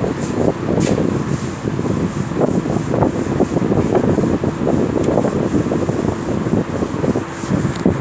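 Blackboard duster rubbing across a chalkboard, wiping off chalk writing in a run of scrubbing strokes.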